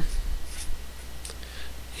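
Felt-tip marker writing on paper: a few short, soft strokes of the tip scratching across the sheet.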